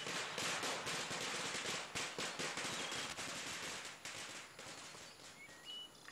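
Rural background ambience: a dense, rapid crackling buzz of insects with a few short bird chirps, fading toward the end.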